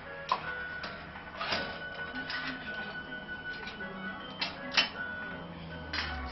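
Simple electronic tune from a baby swing's built-in sound unit, a few held tones, with several sharp clicks scattered through it.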